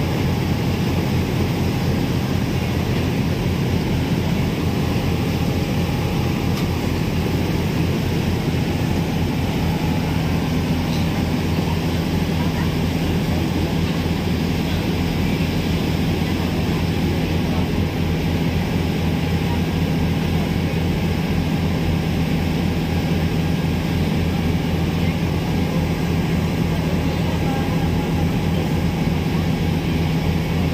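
A passenger ferry's engines droning steadily, heard from the open deck, over a constant rush of wind and churning water.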